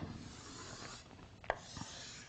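Chalk drawing lines on a blackboard: faint rubbing strokes, with one sharp tap about one and a half seconds in.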